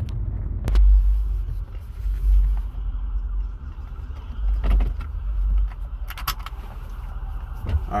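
Low rumble inside a car cabin that swells and fades unevenly, with a few brief clicks.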